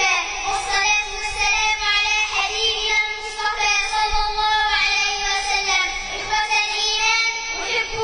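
A young girl's voice reciting the Quran through a microphone in melodic chant, holding long notes in phrases with short breaks between them.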